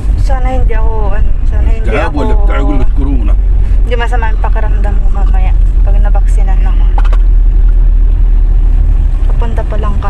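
Steady low rumble of a car's engine and road noise heard inside the cabin, with a voice talking over it in the first few seconds and again around four to five seconds in.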